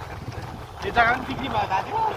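Low, steady rumble of a moving motor scooter with wind on the microphone. A voice comes in over it about a second in.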